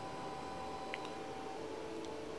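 Quiet room tone: a faint steady hum with a single soft click about a second in.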